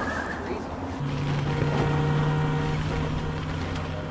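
A pickup truck passing close by on dirt: its engine runs with a steady hum and tyre and road rumble, loudest in the middle as it goes by.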